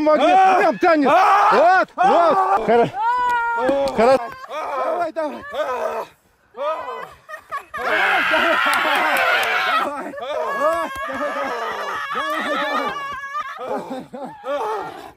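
Several people chanting and shouting in rhythmic, overlapping voices, with a louder group shout about eight seconds in.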